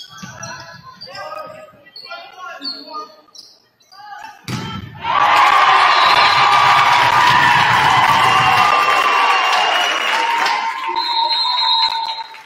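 Volleyball rally in a gym: players' voices and ball contacts, then one hard hit on the ball about four and a half seconds in. Loud crowd cheering follows for about six seconds as the home team wins the point.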